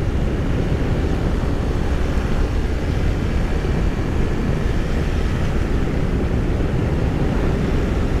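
BMW R1200RS motorcycle cruising at steady road speed: a constant drone of engine and wind rushing over the microphone, heaviest in the low end, without change in pace.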